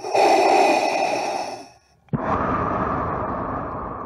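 Darth Vader-style mechanical respirator breathing: a hissing inhale of under two seconds, then a short pause and a longer, lower exhale.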